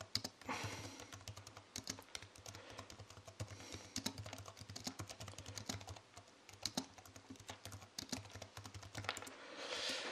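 Faint, irregular clicking of computer keyboard keys being typed on, several taps a second with short gaps, over a low steady hum.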